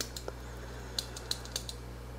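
Light, sharp clicks from a small numbered panel switch being worked by hand: about half a dozen ticks, irregularly spaced, some close together in pairs.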